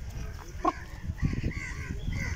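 A single short animal call about two-thirds of a second in, followed by a few low thumps.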